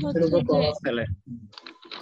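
Speech: a voice talking in short phrases, dropping to quieter, broken sounds in the second half.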